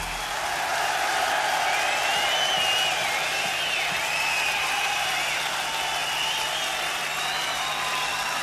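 Concert audience applauding and cheering after the song ends, with a wavering high whistle through the middle.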